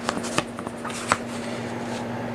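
A paper pattern handled and slid over shirt fabric on a cutting mat: a few light taps and rustles, over a steady low hum.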